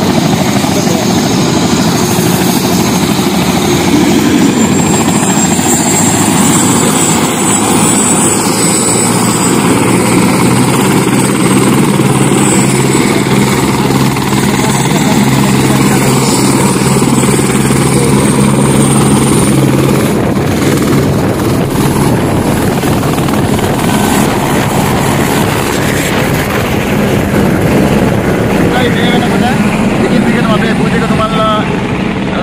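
A helicopter running nearby: a steady loud rotor and engine noise carrying a high whine and a low hum, both of which drop out about twenty seconds in while the general noise continues.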